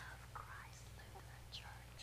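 A woman whispering faintly into a child's ear, over a low steady hum.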